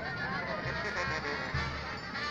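Band music with wind instruments carrying the tune over a steady low drum beat.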